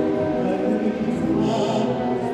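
Tango music with singing, playing steadily at a fairly high level.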